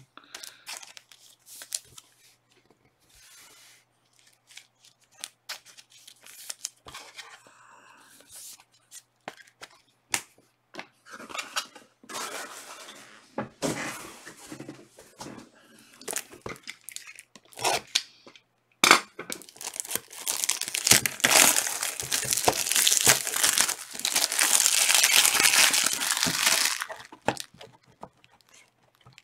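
Scattered light clicks and rustles of cards and packaging being handled, then, about two-thirds of the way in, a loud crinkling and tearing of clear plastic wrap that lasts about eight seconds.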